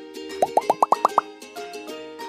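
A quick run of short rising 'bloop' sound effects, each pitched higher than the last, about half a second in, over steady background music.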